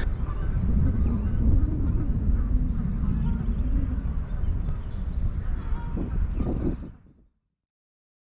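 Wind rumbling on the microphone over open parkland, with a short rapid high trill about a second and a half in and a few ducks calling near the end, before the sound fades out.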